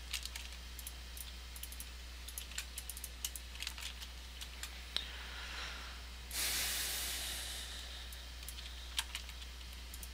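Computer keyboard and mouse clicks in scattered light taps, with a few sharper clicks. About six seconds in, a hiss starts and fades out over a second and a half.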